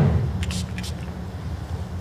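Lawn bowls knocking together in the head on an indoor carpet rink: a sharp clack whose echo rings and dies away in the hall, then a couple of faint clicks about half a second in, over a steady low hum.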